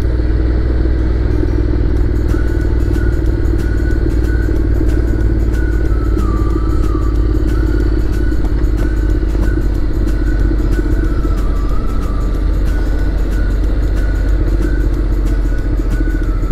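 Motorcycle riding along at a steady pace, its engine running evenly under a constant low wind rumble on the microphone.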